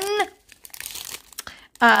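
Clear plastic diamond-painting drill bags crinkling as fingers handle the strip of packets, a soft rustle between spoken words.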